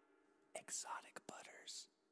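Silence, then about half a second in a whispered voice lasting roughly a second.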